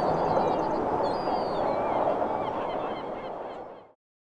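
Outdoor ambience of birds chirping over a steady rushing noise, fading out to silence near the end.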